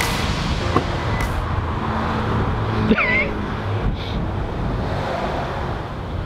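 Steady outdoor traffic noise from the road by a car dealership, with a couple of light clicks early on and a brief high, gliding chirp about three seconds in.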